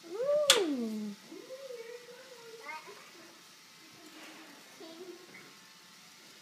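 A toddler's drawn-out wordless vocal sound that rises and then falls in pitch, with a sharp knock about half a second in, followed by a softer held hum-like sound and a few brief babbles.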